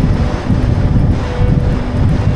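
Wind buffeting the microphone of a moving car, a dense low rumble mixed with road noise. Faint music with a few held notes plays underneath.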